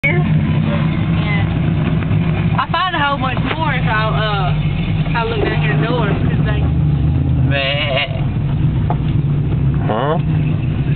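Truck engine running steadily, heard from inside the cab, with people's voices talking over it.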